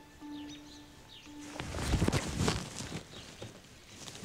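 Soft background music holding a steady low note, with birds chirping, until about a third of the way in. Then it stops and dry brush and brambles rustle and crackle as someone pushes into them on foot. The rustling is loudest just past the middle and then dies down.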